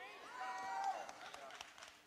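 A faint voice calling out briefly from the congregation, in the first second.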